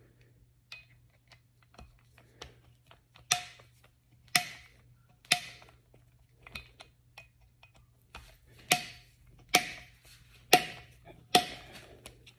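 Optic mounting screws being tightened with a hand torque screwdriver, to a 15-pound specification. It gives sharp metallic clicks with a short ring, about a second apart, three a few seconds in and four more near the end, with fainter ticks between.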